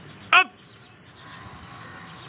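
A man's shouted command "Up!", one short loud call with a falling pitch about a third of a second in, cueing a pull-up rep. The rest is faint outdoor background.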